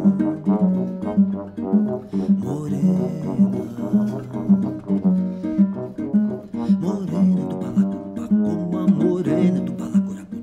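Live acoustic duo music: an acoustic guitar is picked and strummed through the chords while a trombone plays held notes over it.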